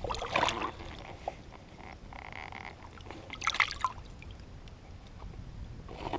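Water splashing and dribbling as a bass is let go over a boat's side into the lake, with a short splash at the start and a sharper one about three and a half seconds in. A brief buzzy sound comes about two seconds in.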